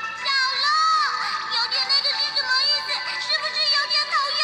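High-pitched cartoon character voices squealing and shouting, with pitch sliding up and down, over background music.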